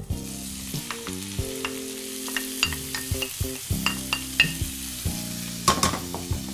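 Diced bell peppers and zucchini hitting hot oil in a frying pan and sizzling, with scattered clicks and pops.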